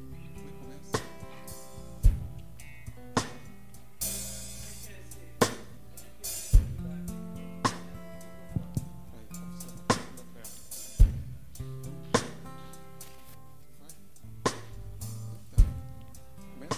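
Live church worship band playing a slow instrumental with drum kit, bass and guitar: a drum hit about once a second over held low notes, with a cymbal crash about four seconds in.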